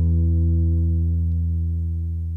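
The last chord of a group of acoustic guitars ringing out and slowly fading, its higher overtones dying away first while the low notes hold.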